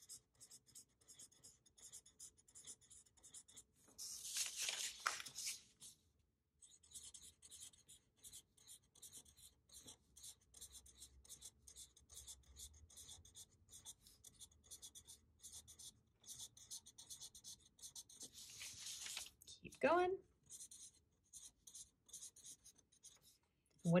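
A black Sharpie marker drawing a chain of cursive A's on paper: a quick run of short, faint strokes, with two longer, louder stretches, one about four seconds in and one near the end.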